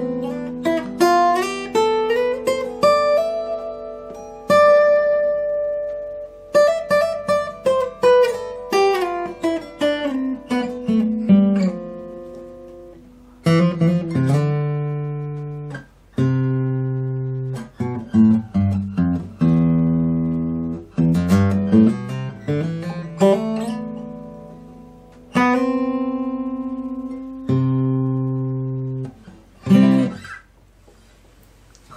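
K.Yairi acoustic guitar playing the do-re-mi scale as a brisk melody, with hammer-ons and slides between notes over ringing bass notes. It goes in several phrases of rising and falling runs, and the last note rings out near the end.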